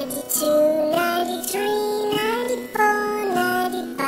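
Children's counting song: a sung voice counts up through the low nineties, one number after another, over an instrumental backing.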